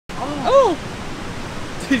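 Steady rush of a creek's flowing water, with a short two-part rising-and-falling exclamation from a person's voice about half a second in.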